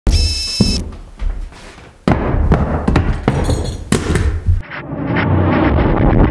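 A run of knocks, thuds and clicks from canvas being stretched over a wooden stretcher frame and stapled down, in short edited bursts. A brief ringing tone at the very start.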